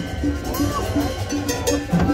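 Live Latin dance band playing: a steady cowbell beat over bass and drums.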